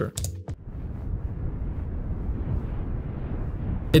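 Wind ambience sound effect: a steady rushing of wind, with most of its weight in the low end. It starts just after a couple of mouse clicks about half a second in.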